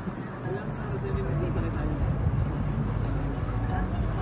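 A boat's engine humming steadily, with voices and music over it; the sound grows louder about a second in.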